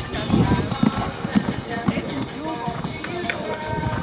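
Music and indistinct voices, with a horse's hoofbeats on sand as it lands from a jump and canters on.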